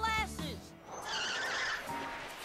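Cartoon soundtrack: a character's voice over background music, then about a second in a brief whooshing swish effect of a pony flying.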